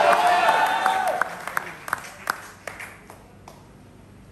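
A man's drawn-out shout of response from the congregation, then a handful of scattered hand claps that thin out and stop a little past halfway, leaving quiet room tone.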